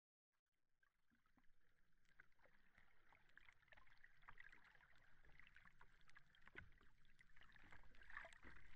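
Faint underwater ambience fading in from silence: a soft hiss with many small crackles and pops scattered through it.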